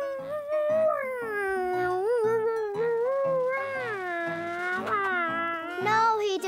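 A cartoon child's voice making one long aeroplane-style flying noise that rises and falls in pitch, over background music with a steady beat.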